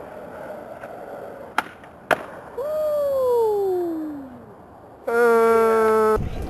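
Skateboard wheels rolling on a hard tennis-court surface, with two sharp board clacks about a second and a half and two seconds in. A long pitched sound then slides steadily down in pitch, and near the end a loud steady buzzing tone sets in.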